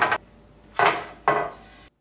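Flat aluminum extrusion panels being shifted into place on a CNC table frame: metal scraping and clattering, with two short scrapes about a second in and half a second later.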